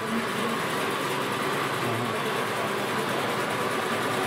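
Electric brush-type honeycomb-frame uncapping machine running, its two motor-driven shafts spinning to strip wax cappings from both sides of a frame at once. It gives a steady, even whirring hum with a constant high tone.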